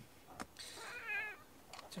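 A domestic cat gives one wavering meow, just under a second long, a little after a short click.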